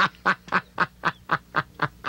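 A man laughing: a steady run of short "ha" pulses, about four a second.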